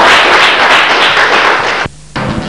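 Small group of people clapping, loud and dense, cut off abruptly near the end.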